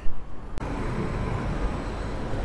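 Steady road traffic noise of a city street, a low, even rumble of passing vehicles. About half a second in the sound breaks off sharply and resumes, where the recording cuts.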